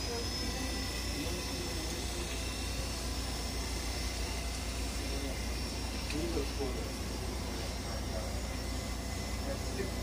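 A large drum fan runs steadily, giving a low hum and an even rush of air, with faint voices behind it.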